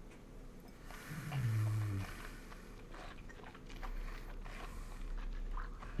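A man's short, low "mm" hum of appreciation about a second in, dipping slightly in pitch and then held, as he savours a sip of whisky. Faint breathing and mouth sounds follow.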